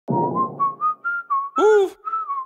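A whistled melody opening a hip-hop track: a quick run of about six short notes stepping up and down. Near the end comes a louder short pitched sound that rises and then falls.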